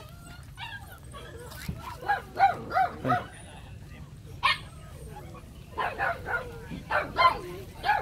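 Phu Quoc ridgeback puppy yipping and whimpering: short high cries that rise and fall in pitch, a quick run of three about two seconds in and several more near the end.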